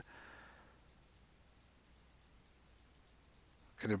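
Faint computer mouse clicks, repeated several times a second: a mouse button pressed over and over to step a chart forward.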